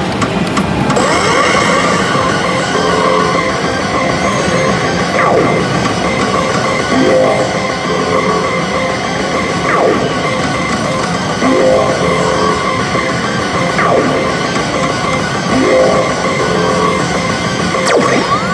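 Pachislot machine playing loud rock-style music layered with electronic sound effects, with sweeping glides recurring every couple of seconds.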